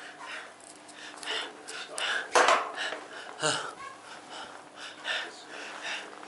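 A man breathing hard and rhythmically while exercising in thin air, a low-oxygen room set to about the oxygen level at 6,500 m, with one louder, sharper breath about two seconds in. A faint steady hum runs underneath.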